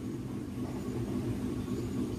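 A steady low background hum with no distinct events.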